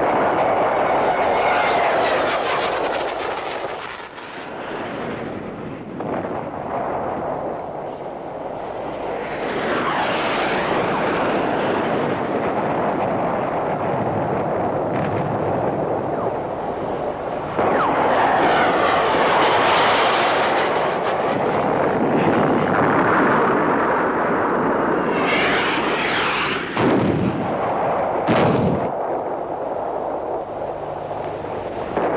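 Battle sound effects: aircraft passing low overhead several times in rising and falling swells, over a continuous rumble of gunfire and explosions, with two short sharp passes near the end.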